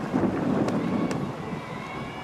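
Wind noise on an outdoor microphone, heaviest in the first second, over faint background ambience with two faint ticks near the middle.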